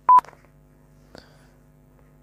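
A single short, loud electronic beep at one steady pitch right at the start, then only a faint steady low hum with a soft click about a second in.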